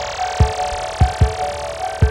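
Instrumental stretch of a 1990 Japanese pop song with no singing: deep drum thumps in an uneven beat under held chords, with a hiss rising in pitch over the first half second.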